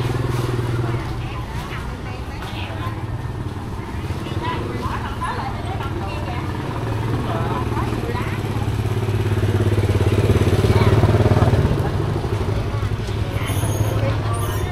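Motor scooters running through a narrow, busy market alley, the engine hum swelling as one passes close about ten seconds in, with vendors' and shoppers' voices chattering around.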